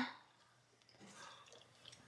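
Near silence, then faint wet mouth sounds of small gumballs being chewed, starting about a second in, with a few tiny clicks near the end.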